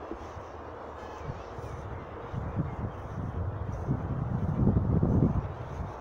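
Wind buffeting the microphone outdoors: irregular low rumbling gusts that build from about two seconds in and are strongest near the end, over a steady hiss.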